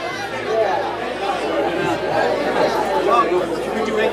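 Crowd chatter in a bar between songs: many overlapping, indistinct voices. A low held note dies away about a second in.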